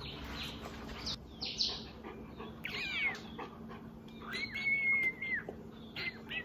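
Small dog whining: a few short high whimpers, then one longer held whine about four and a half seconds in.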